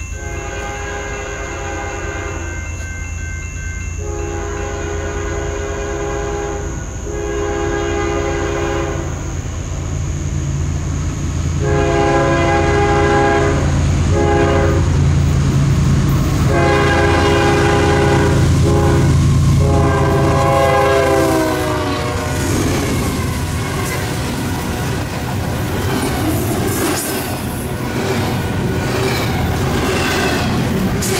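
Air horns of three diesel-electric GE locomotives leading a fast intermodal freight train, sounding a series of long and short blasts as the train approaches. Their pitch drops as the locomotives pass about 20 seconds in. The engines' low rumble then gives way to the steady rolling clatter of double-stack container cars going by.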